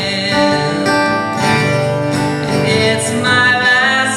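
A man singing while strumming an acoustic guitar.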